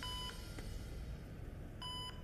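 Two short electronic beeps, each a single steady tone, the first at the start and the second near the end, with a faint click in between.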